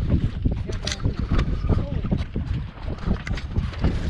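Wind buffeting the microphone and water sloshing against a small boat's hull, with scattered knocks and clatter from the deck.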